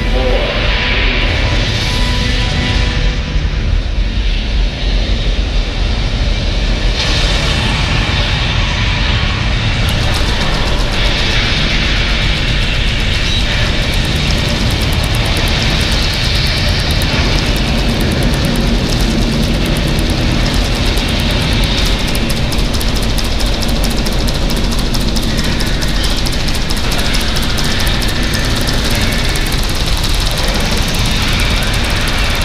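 Recreated Saturn V rocket launch played through a theater's loudspeakers: a loud, steady roar with a heavy deep rumble, with music mixed in.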